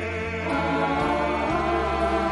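Mixed choir of men's and women's voices singing a gospel song in held, sustained chords over a low bass line.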